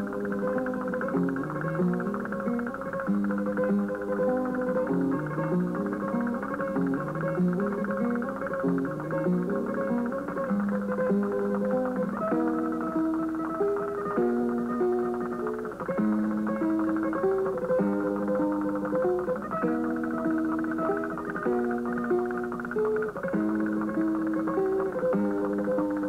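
Flamenco guitar playing: quick falling runs of plucked notes over the first half, then repeated chords in a steady rhythm, with a muffled, dull tone.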